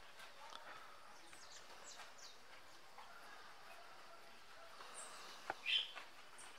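Faint open-air ambience with a few short, high bird chirps, then a single sharp click and a brief higher sound near the end.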